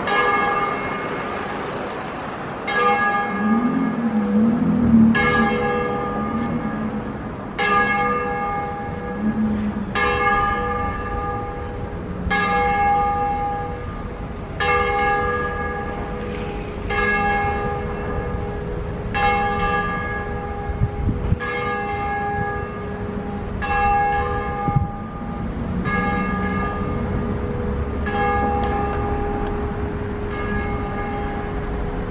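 A single church bell, the third of a ring of five bronze bells cast by Giulio Cesare Bizzozero in 1881, swinging full-circle 'a distesa'. Its clapper strikes about every two and a half seconds, and each stroke rings on into the next.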